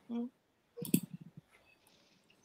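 A short hummed 'mm', then a sharp click a little under a second in and a few brief, faint voice fragments, picked up through a video-call microphone.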